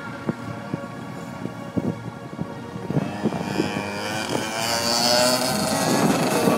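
125cc two-stroke kart engine, sputtering unevenly at first, then revving up as the kart accelerates: its note climbs steadily in pitch and grows louder through the second half.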